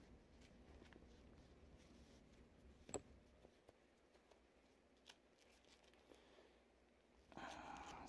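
Near silence, with faint rustling and a few light clicks as cycling gloves are pulled on over the hands; the clearest click is about three seconds in.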